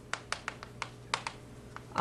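Chalk writing on a blackboard: a quick, irregular run of about a dozen sharp taps and short strokes as characters are written.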